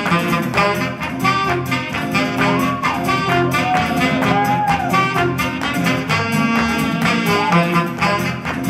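Live band music with a saxophone soloing, its melody swooping and bending in pitch over the band's steady beat.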